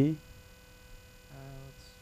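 Steady electrical mains hum in a pause between spoken words, with the end of a man's word at the start and a faint short "mm" about a second and a half in.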